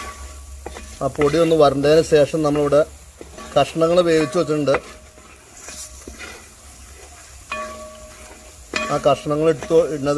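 A wooden spatula stirs and scrapes vegetables frying in masala in a large metal pan, with a light sizzle. Three times a louder wavering pitched sound rises over it, about a second long each, about a second in, near the middle, and near the end.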